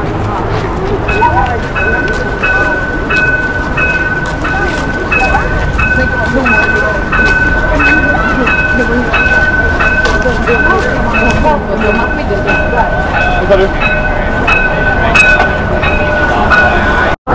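A steady high electronic tone with a shorter, higher beep repeating about one and a half times a second, starting about a second in, with a lower tone joining about halfway through, over crowd chatter and street noise.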